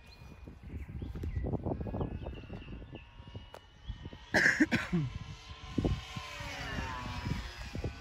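Electric RC airplane's 2216 brushless motor and 10x7 propeller whining as it flies past overhead, the whine falling in pitch between about five and seven seconds in. Gusts of wind rumble on the microphone throughout, with a brief loud noise about four seconds in.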